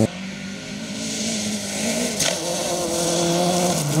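Rally car engine approaching on a gravel stage, revving hard and growing steadily louder, with a brief drop in revs for a gear change about two seconds in and again near the end.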